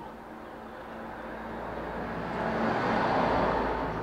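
A passing vehicle: a broad noise that swells to a peak about three seconds in, then starts to fade.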